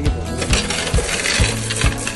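Loose coins pouring from a plastic bag into the hopper tray of a coin deposit machine, a dense jingling clatter. Background music with a steady beat plays underneath.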